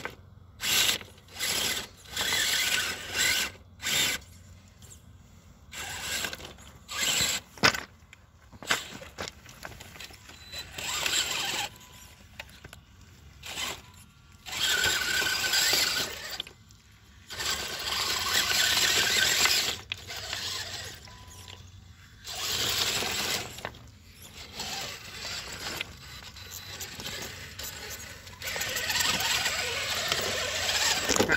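Traxxas TRX-4 RC rock crawler's electric drivetrain whining and grinding in repeated short throttle bursts that start and stop abruptly, as the truck tries to work free of a high center on the rocks.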